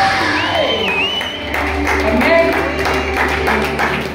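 A man's loud amplified voice through a PA over electronic keyboard music, with a congregation clapping and cheering. A steady low bass note comes in about a second and a half in.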